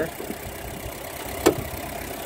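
Ford Escort van's little overhead-valve engine idling steadily, with one sharp click about one and a half seconds in.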